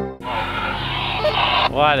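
Guitar music cuts off at the very start. Then an off-road truck towing a camper trailer crawls over a rocky trail: a low, steady engine hum under a rough noise. A man starts to speak near the end.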